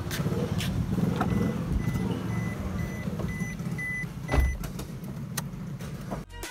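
Small Suzuki car's engine idling with a steady low rumble. A repeated high beep sounds from about a second in, and a few clicks and a car door shutting with a thump come about four seconds in.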